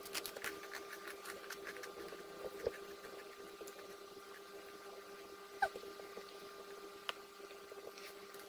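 Quiet eating by hand: fingers working rice and fish on a plate, with soft chewing and small mouth clicks, and a sharper smack about five and a half seconds in, over a faint steady hum.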